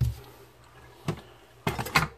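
Handling noise on a workbench: a low thump, then a light click about a second in and a few short knocks and clicks near the end, as an electric guitar and hand tools are moved about.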